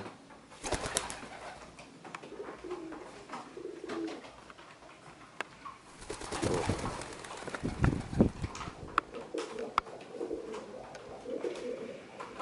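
Domestic pigeons cooing in low calls, with noisy bursts of wing-flapping about a second in and again from about six to eight seconds in, as a young pigeon takes off and settles on a fence.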